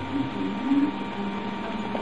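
Steady electrical hum with a faint high whine, from the running computer. A faint low murmur rises briefly around half a second in.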